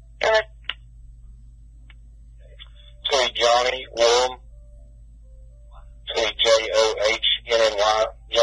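Sheriff's dispatch radio traffic played back on a Uniden police scanner: short, garbled transmissions with gaps between them, over a steady low hum. There is a brief burst at the start, another about three seconds in, and a quicker run of exchanges from about six seconds on.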